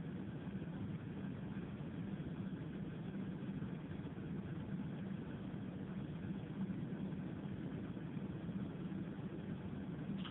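Steady low hum and hiss inside a car cabin, the car's engine running at idle.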